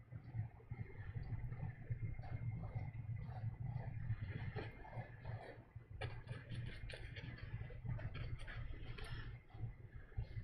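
Oil-paint brush strokes on canvas: short, scratchy strokes coming and going irregularly, over a steady low hum.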